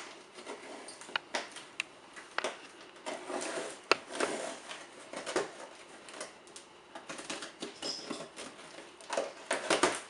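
Packing tape being peeled and torn off a cardboard shipping box, with irregular scratches, rustles and sharp clicks; the loudest click comes about four seconds in. Near the end comes a busier run of cardboard handling as a flap is pulled open.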